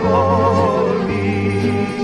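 Sung vocals holding notes with a wide vibrato over instrumental accompaniment with a steady bass line.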